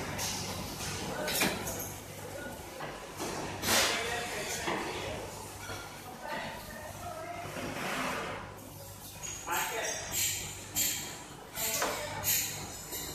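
Knocks, clinks and scrapes of hands and utensils working dough on a stainless-steel counter, over a steady low hum, with faint voices in the background.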